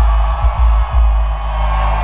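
Hip-hop beat with heavy sub-bass over a concert PA: a few deep bass hits about half a second apart in the first second, then a held bass note, with a thin high tone sustained above it.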